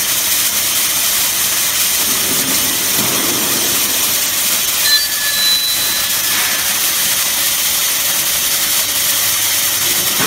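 Metabo KFM 16-15 F electric edge-milling bevelling machine running under load as it cuts a 3 mm bevel along the edge of a steel plate: a loud, steady, hissing machine noise, with a brief high whistle about five seconds in.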